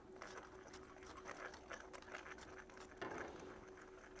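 Faint crackling clicks of a wooden pepper mill being twisted, grinding peppercorns. The mill is faulty and lets the peppercorns through whole.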